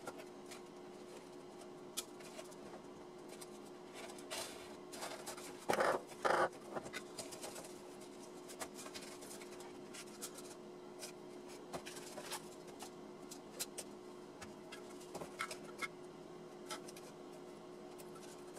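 Plastic 3D-printer filament spools being handled and slid onto plastic pipe axles in a homemade drying rack: scattered light clicks, knocks and scrapes, with two louder rustling scrapes about six seconds in. A faint steady hum runs underneath.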